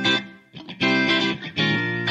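Instrumental background music: guitar chords played in short phrases that swell and die away about once a second.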